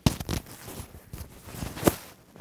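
Rustling and scraping of clothing as a hand fumbles at a vest, with a few sharp clicks and a louder knock near the end.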